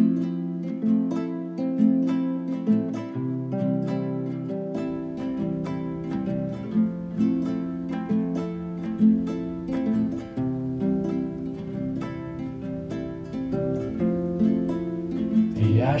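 Instrumental song intro: plucked-string notes picked in a steady pattern over held low notes, with a deeper low layer coming in about five seconds in.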